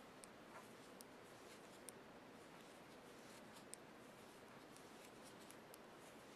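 Faint, irregular clicks of metal knitting needles tapping together as stitches are purled, over quiet room hiss.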